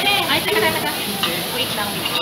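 Beef steak and sliced onion sizzling on a hot steel teppanyaki griddle.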